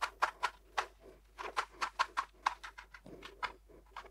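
Kitchen knife chopping fresh basil on a plastic chopping board: a quick, uneven run of knocks, about four to five a second.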